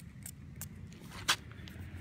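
Water spray bottle squirting a short hiss onto a freshly dug coin held in the palm, about a second in, among a few faint handling clicks over a low steady background rumble.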